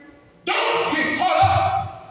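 A man's voice preaching over a microphone and PA: one loud phrase with a drawn-out syllable near its end.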